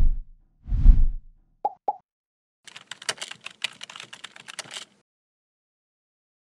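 Logo-animation sound effects: two deep whooshing thumps in the first second, then two quick pitched plops, then about two seconds of rapid computer-keyboard typing clicks as a web address is typed into a search bar.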